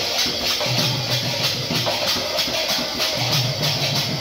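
Kirtan music: a two-headed barrel hand drum (khol) played in a quick, steady rhythm, with metallic cymbal strokes falling evenly several times a second above it.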